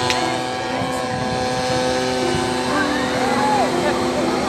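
Engine and propeller of a homemade light aircraft droning steadily as it flies over the sea, with people's voices nearby.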